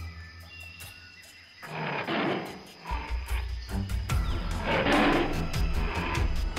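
Two rough, growling animal roars, one about two seconds in and one about five seconds in, over background music with a steady low bass.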